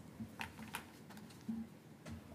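A few scattered light clicks and soft knocks, such as keys or desk handling, in a quiet meeting room.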